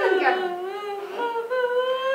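A woman's voice held in one long, slightly wavering wailing note, like a sung lament of grief.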